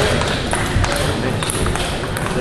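Table tennis balls clicking against bats and tables at intervals, over a background of voices in the hall.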